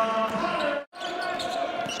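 Basketball game ambience in an arena: a steady bed of background noise with a few sustained tones, no commentary. It drops out completely for a moment a little before halfway, then carries on.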